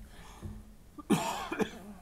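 A person coughing once, sharply, about a second in.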